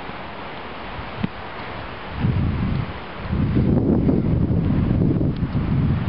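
Wind buffeting the camera microphone: a steady rush, then heavy low gusts from about two seconds in that grow louder and hold through the rest.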